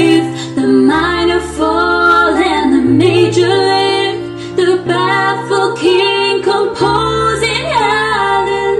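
Two women singing a slow duet together, holding long notes over an instrumental backing with sustained bass notes that change every second or two.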